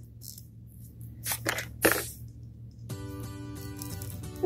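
A few light plastic clicks as toy roller skates are pushed onto a small doll's feet. Background music with held tones comes in about three seconds in.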